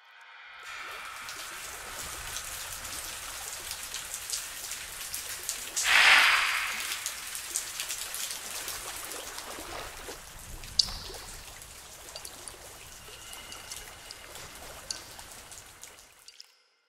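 Eerie sound effects: a steady rain-like patter full of small crackling clicks, a loud rushing swell about six seconds in, and a single sharp click a little before eleven seconds.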